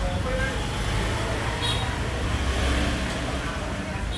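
Steady low rumble of road traffic, with faint voices in the background and one brief click a little before halfway.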